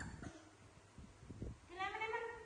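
Young macaque giving a high squealing call near the end, with a few soft knocks and thumps from movement on the tiled floor before it.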